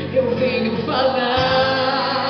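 Live gospel song: a woman singing into a microphone over instrumental accompaniment, amplified through loudspeakers. Low bass notes come in about one and a half seconds in.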